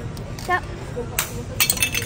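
A sharp crack and then a quick run of clinking clicks, about a second in, as a plastic cat-shaped pencil sharpener is pulled open.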